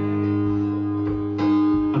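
Acoustic guitar chord ringing out, strummed again about halfway through, in a gap between sung lines; the voice comes back in at the very end.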